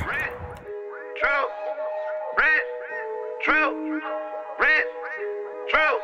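Background music comes in about a second in: held chords with a short pitched figure repeating a little more than once a second.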